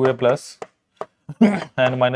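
A pen tapping and stroking on a writing board as a formula is written, giving a few short sharp knocks about half a second and a second in, with a man's voice speaking briefly at the start and near the end.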